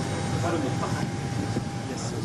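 Steady rushing noise inside the cabin of the Airbus A380 test aircraft, with a faint steady whine running through it and faint voices in the background.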